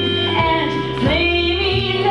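A woman singing a stage song over band accompaniment, her voice sliding between long held notes above a steady, stepping bass line.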